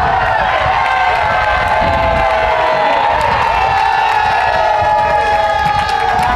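A group of baseball players shouting and cheering together in the dugout to celebrate a three-run home run, many voices overlapping at a steady, loud level, with a few claps near the end.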